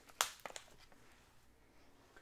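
Grocery packaging handled: one sharp crinkle near the start, a few fainter ticks just after, then soft rustling.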